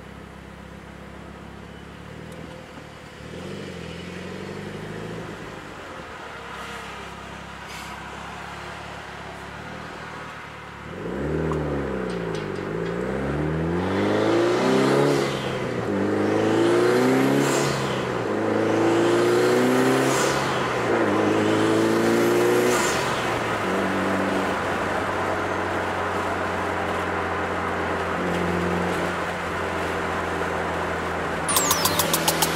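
Mitsubishi Lancer Evolution IX's turbocharged 4G63 inline-four, running with a test pipe in place of the catalytic converter, heard from inside the car. It cruises steadily, then about eleven seconds in it accelerates hard through several rising pulls, each broken by a gear change, and settles back to a steady cruise near the end.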